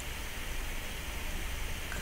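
Steady, even hiss of background noise with no distinct sound in it.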